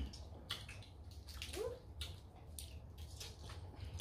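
Close-up seafood eating: crab and shrimp shells being picked and cracked by hand, and lips sucking and smacking on the meat, heard as a string of short wet clicks and crackles.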